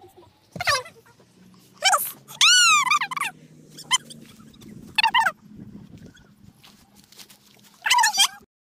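An animal whining in a string of short, high calls that rise and fall, the longest and loudest about two and a half seconds in, over a faint low hum.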